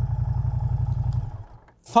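Moto Guzzi V100 Mandello's transverse V-twin engine running at a steady idle, a low even pulse. It dies away about a second and a half in.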